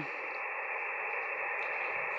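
Steady hiss of 40 m band noise from an Elecraft KX2 transceiver's receiver, heard through its speaker and cut off above about 2.8 kHz by the receive filter.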